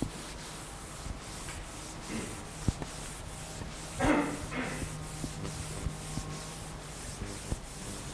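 Chalk writing on a chalkboard: scratchy strokes and short taps of the chalk against the board, over a steady low room hum, with one brief louder sound about four seconds in.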